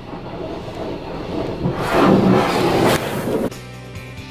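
Automatic car wash spraying water over the car, heard from inside the cabin as a steady rush that swells about two seconds in. Near the end it cuts off suddenly to background music.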